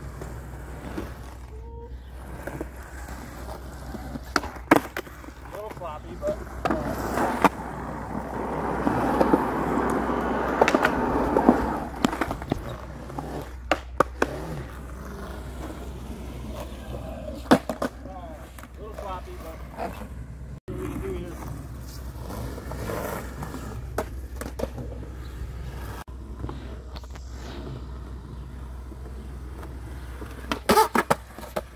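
Skateboard wheels rolling on smooth concrete, with several sharp clacks of the board's tail and wheels hitting the ground as tricks are popped and landed. The rolling gets louder for a few seconds about a third of the way in.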